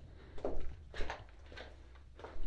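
Footsteps on the gravel floor of a rock tunnel: three steps, roughly half a second apart, the first two the loudest.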